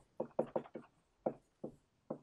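Dry-erase marker writing on a whiteboard: a quick, irregular run of faint, short taps and strokes, about seven in all.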